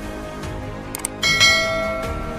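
Two quick mouse-click sound effects about a second in, followed by a bright bell chime that rings out and slowly fades: the click and notification-bell effects of a subscribe-button animation, over steady background music.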